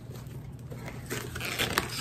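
Cardboard shipping box being handled and pulled open: soft scraping, with a few short crackles in the second half.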